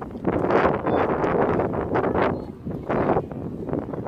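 Wind buffeting the camera's microphone in uneven gusts, a loud rumbling noise that swells and eases several times.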